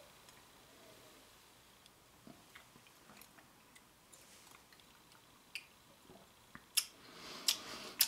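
Faint mouth sounds of someone tasting a sip of neat whiskey: soft lip smacks and tongue clicks, scattered and quiet at first, with a few sharper smacks in the last couple of seconds.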